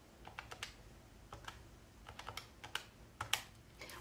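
Keys of a plastic 12-digit desktop calculator being pressed, a faint run of short, irregular clicks as a sum is keyed in.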